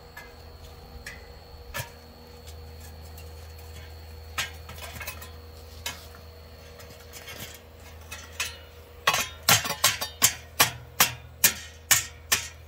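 A metal stand knocking against the steel casing of an in-ground fire pit as it is set in place. A few scattered clanks come first, then a quick run of sharp, loud clanks, about two or three a second, over the last few seconds.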